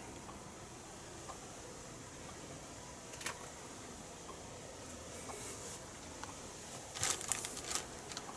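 Faint workbench handling noises: a single light click about three seconds in, then a short cluster of clicks and rattles near the end as the soldering iron and helping-hands clamp are handled.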